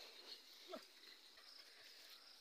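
Near silence, with faint steady insect chirring high in pitch throughout and one short, faint falling call about three-quarters of a second in.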